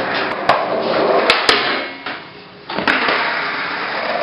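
Skateboard clacks and knocks: several sharp ones in the first second and a half and another about three seconds in, over a steady rushing noise that dips briefly about two seconds in.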